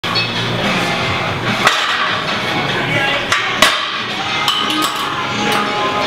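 Music playing, with two sharp metal clanks of weight plates being handled: one about a second and a half in, the other about two seconds later.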